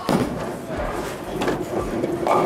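A six-pound bowling ball landing on the lane at release with a sharp thud, then rolling down the lane.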